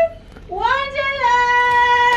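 A high-pitched voice singing a long note: it slides up near the start, then holds steady on one pitch for the second half.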